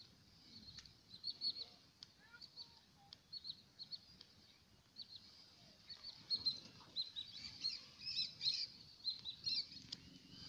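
A flock of lesser whistling ducks calling: many short, high whistles, each dropping at the end, in quick runs that come thicker and overlap from about halfway.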